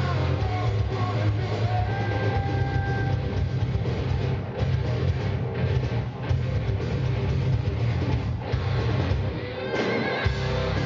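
Hard rock band playing live: distorted electric guitars, bass and a drum kit in a passage with no singing.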